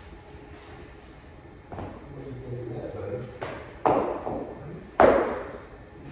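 Raised dog cot's frame knocking and thudding on a hard floor as it is carried and set down: a few knocks, the loudest about five seconds in.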